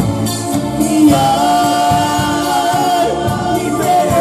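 Live Roma band music with singing, played on keyboard, electric guitars and drums; a long note is held from about a second in until near the end.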